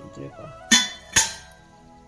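Two sharp metallic clinks about half a second apart, each with a short ring, from a hand knocking against antique metal kitchen vessels.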